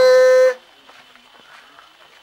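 A man's voice holding one long drawn-out vowel on a steady pitch, which stops about half a second in; after that only faint background noise.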